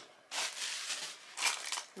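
Cardboard box being handled and its lid worked open: a rustling scrape of card on card that starts about a third of a second in and grows louder briefly near the end.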